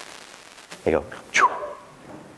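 Only speech: a man says two short words about a second in, after a brief quiet pause.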